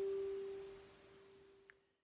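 Double-strung harp strings ringing out on a G and fading away, with a faint click just before the sound cuts off near the end.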